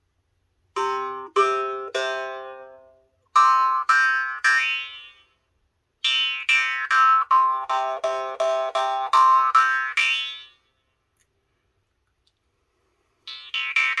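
Nepalese small murchunga, a handmade jaw harp in the key of C, plucked in short phrases: three twangs, three more, then a quicker run of about a dozen, each ringing a steady drone under overtones that shift from pluck to pluck as the mouth changes shape. After a pause of a few seconds, fast rhythmic plucking starts near the end.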